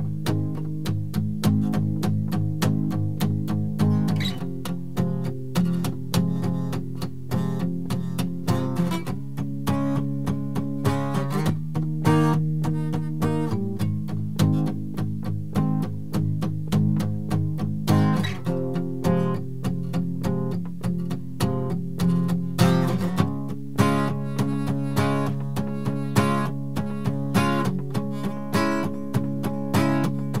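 Acoustic guitar strummed with a pick in steady, even strokes, in groups of eight per chord. The chord changes every few seconds through a G-sharp major, F minor, C-sharp major, D-sharp major progression.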